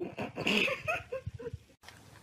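A dog making a run of short whining vocal noises during rough play, its pitch wavering up and down, cut off abruptly near the end.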